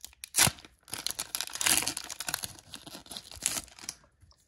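Foil wrapper of a Pokémon booster pack being torn open by hand: one sharp rip about half a second in, then a few seconds of crinkling and crackling as the foil is pulled apart.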